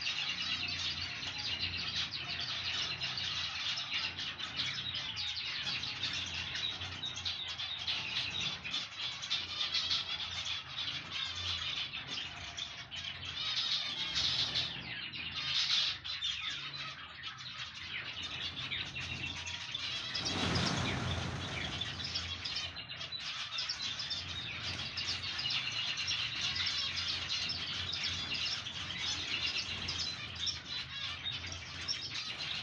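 A flock of many finches chirping and chattering together in a dense, unbroken chorus of short high calls. A brief rushing noise cuts across it about two-thirds of the way in.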